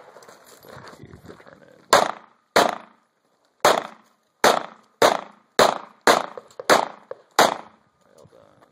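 Handgun fired nine times, each a sharp report with a short echo off the berm. Two shots come about two seconds in, then after a pause of about a second, seven more follow at roughly half-second intervals.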